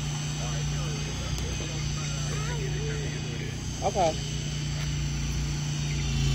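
An engine idling steadily, a low even drone with no change in speed.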